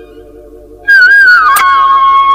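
Instrumental introduction of a Gujarati devotional prabhatiya. At first only a soft low sustained accompaniment is heard. About a second in, a high, whistle-like melody line comes back in loudly, slides through a short ornamented phrase and settles on a long held note. A sharp click comes just after the melody re-enters.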